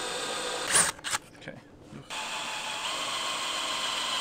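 DeWalt cordless drill running, boring through the metal channel of an awning. It runs steadily, stops about a second in, and starts again about two seconds in.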